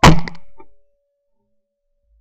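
A single shot from a Davide Pedersoli La Bohemienne 12-gauge side-by-side hammer shotgun fired at a flying clay: one very loud crack right at the start with a short ringing tail that dies away within a second.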